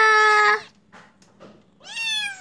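Ginger kitten meowing twice: a long, high-pitched call that ends about half a second in, then a shorter meow falling in pitch near the end.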